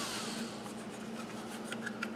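Faint rubbing and a few light clicks of hands handling a Kydex holster. At the start, the last of a Dremel rotary tool's falling whine fades out as it spins down, over a steady low hum.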